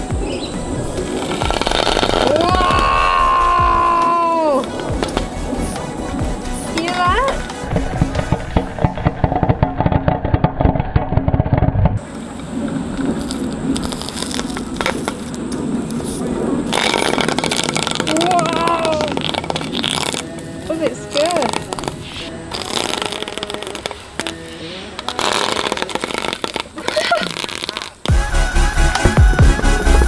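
Electronic background music with a steady beat and a vocal-like melody line, its top end briefly cut off for a few seconds in the middle.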